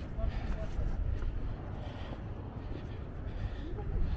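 Wind rumbling on the microphone under faint, indistinct voices of a crowd of people.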